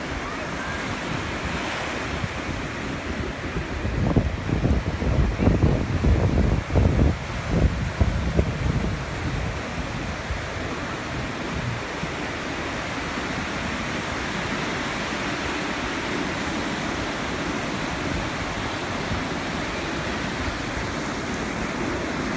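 Ocean surf washing and breaking steadily, with wind buffeting the microphone in heavy, rumbling gusts from about four to eight seconds in.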